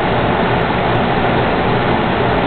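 Steady fan noise with a low hum underneath.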